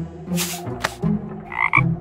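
Cartoon frog croaking a few times, a sound effect over background music.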